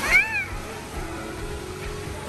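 A brief high-pitched squeal from a young child, about half a second long, rising and then falling in pitch right at the start, followed by quieter indoor-pool background.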